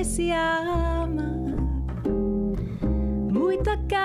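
Bossa nova played live on ukulele and double bass, with a woman singing the melody over the plucked ukulele chords and walking bass notes.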